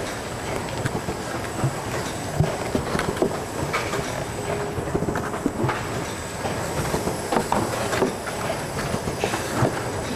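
Adco CTF-470V hot-melt tray former running, a steady mechanical clatter of irregular clicks and knocks as it forms cardboard trays, here at 30 trays a minute.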